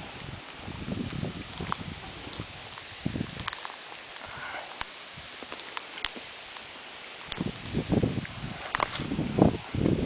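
Dry grass and sea buckthorn branches rustling and snapping as someone pushes through them and reaches into the bush by hand, with irregular thumps of footsteps and handling that grow heavier near the end.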